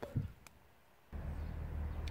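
Brief quiet, then about a second in a steady low rumble starts abruptly and carries on.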